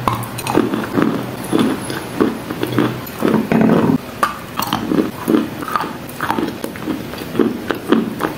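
Close-miked biting and chewing of wet chalk: wet crunching mouth sounds at about two chews a second, with one longer crunch a little past the middle.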